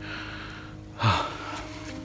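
A man breathing hard while walking up a steep forest path: a breathy exhale near the start and a short voiced gasp about a second in.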